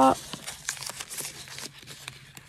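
Faint rustling and crinkling with a few small clicks as a fashion doll's small garment bag and its packaging are handled and worked open.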